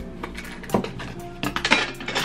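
Kitchen utensils clinking as a small metal mesh sieve and a tub of cocoa powder are handled for dusting cocoa: a sharp clink about three-quarters of a second in, then a quick cluster of clinks near the end, over background music.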